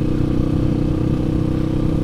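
Kawasaki KLX 150's air-cooled single-cylinder four-stroke engine running at a steady speed while the bike is ridden, the engine tuned for more power without a bore-up.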